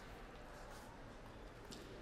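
Quiet sports-hall ambience between points: a faint, even room hum with one faint tick near the end.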